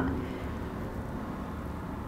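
Quiet room tone: a steady low rumble with no distinct sounds.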